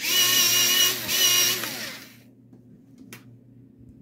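A small USB electric pencil sharpener's motor whirring as it grinds a pencil, in two stretches with a short dip about a second in. The motor then winds down, its pitch falling, and stops about two seconds in.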